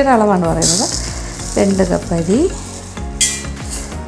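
Dry idli rice grains poured from a steel tin into a small cup: a hissing rush of grains about half a second in lasting about a second, and a second, shorter pour near the end.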